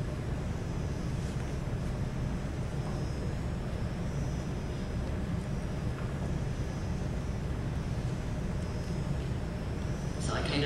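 Steady low hum and hiss of a large hall's room noise, with a few faint high whines, in a pause with no speech.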